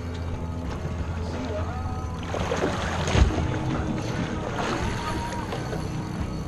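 Boat engine idling with a steady low drone, with faint voices or music in the background.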